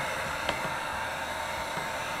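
Handheld electric heat gun running, blowing hot air in a steady hiss with a faint steady whine.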